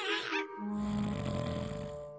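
Soft background music with sustained chords. From about half a second in, a low, rough creature sound lasts over a second: the vocal effect of a small cartoon Triceratops.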